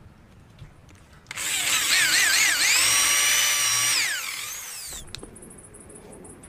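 Handheld power drill running as it bores a dowel hole into a clamped block of wood. The motor whine starts over a second in and wavers in pitch as the trigger is feathered. It then holds steady and winds down in pitch after about three seconds as the trigger is let go.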